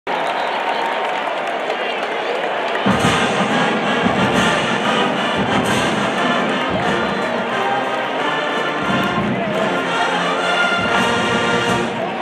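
Music: a sustained, tonal opening that is joined by a deep bass beat about three seconds in.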